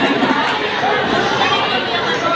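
A large crowd of children chattering at once, a steady babble of many overlapping voices filling a big gymnasium.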